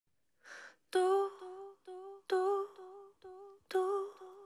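A woman humming one repeated note into a microphone in a steady loud-soft-soft pattern, about three hums every second and a half, after a short breath at the start; the loud hums begin sharply.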